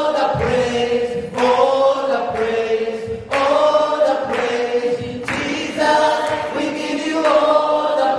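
A group of worshippers singing a gospel praise song, led by a man singing into a microphone, in short phrases about two seconds long.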